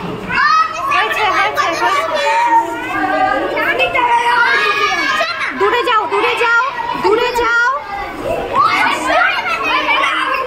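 A crowd of schoolchildren shouting and chattering excitedly all at once, many high voices overlapping.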